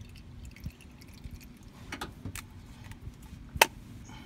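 A few light clicks and knocks as a used spin-on oil filter is handled and tipped over a plastic oil drain pan, with one sharp knock near the end the loudest.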